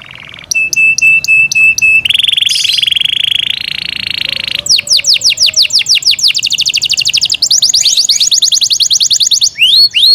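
Yorkshire canary singing a loud, varied song built from rapidly repeated phrases. A run of short clear notes gives way to a fast buzzing trill that steps up in pitch, then to long series of quick downward-sweeping notes and rapid trills.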